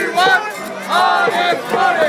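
A crowd of protesters shouting a chant together, many voices overlapping.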